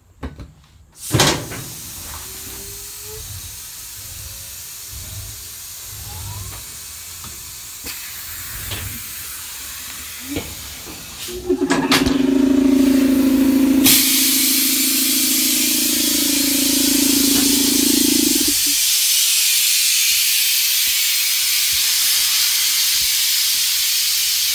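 Compressed air hissing as an air-powered lift raises the mower, starting about halfway through and growing louder a couple of seconds later. For several seconds a low steady hum runs alongside it. A sharp click comes about a second in.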